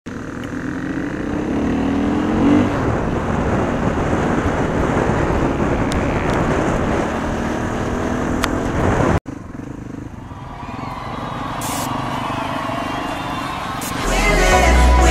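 Dirt-bike engine running under way, with heavy wind noise on a helmet-mounted microphone; the engine revs up about two seconds in. An abrupt cut about nine seconds in drops the level, after which the engine is heard running more quietly with less wind.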